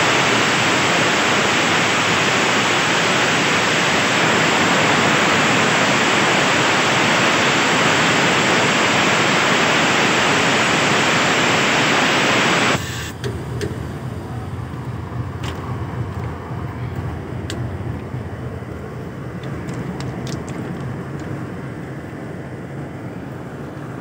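Compressed air blasting out of a railway wagon's air-brake pipe through an opened angle cock: a loud steady hiss that cuts off suddenly about 13 seconds in. After it come a few light metallic clicks.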